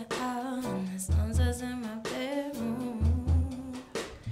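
Jazz trio playing live: grand piano, electric bass guitar and drum kit, with a voice singing over them, its pitch wavering.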